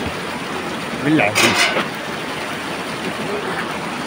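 A steady rushing outdoor noise, with a voice calling out briefly about a second in.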